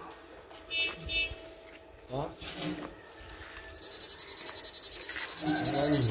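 Electronic fish shocker (16-FET, two-transformer) with its pole electrode in the pond water, set to low frequency. About two-thirds of the way in its high buzz starts suddenly and pulses rapidly and evenly.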